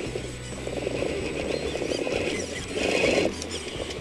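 Electric RC crawler's 20-turn 550 motor and geared drivetrain whirring under load as the tyres scrabble for grip on rock, the truck struggling for traction; the sound swells briefly about three seconds in.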